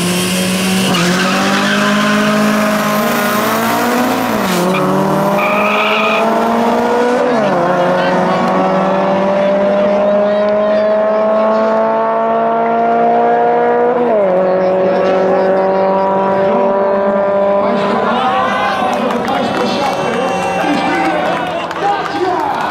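Drag-race cars, a turbocharged 1.4 Dacia and a Honda, accelerating flat out from the start line. One engine note dominates, climbing in pitch and dropping three times as it shifts up, then fading as the cars pull away down the strip.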